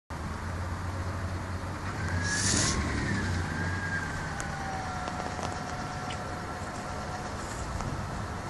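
A car engine idling, heard from inside the car as a steady low rumble. A faint whine rises about two seconds in, then slowly falls and levels off, with a short hiss near its peak.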